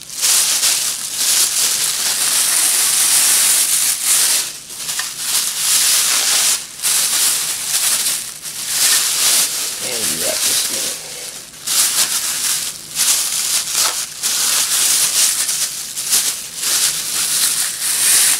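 Plastic bags crinkling and rustling loudly close by as they are handled and unwrapped, in an almost continuous run broken by a few short pauses.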